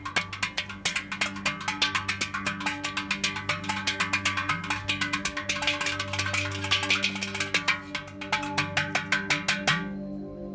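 A brass pot drummed with the hands: a fast, continuous rhythm of metallic taps with a bright ringing tone, over a low steady drone.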